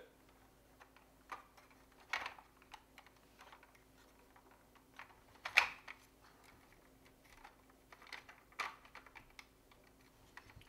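Hard plastic toy parts being handled and fitted together: scattered light clicks and taps, the loudest about halfway through and again near the end, as the underbelly panel's tabs are worked into the fuselage of a vintage G.I. Joe Cobra Rattler.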